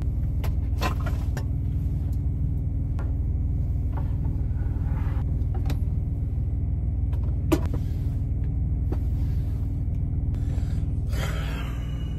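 Steady low engine rumble of an idling semi-truck heard from inside the sleeper cab, with a few light clicks and knocks as things are handled, the sharpest a little past the middle.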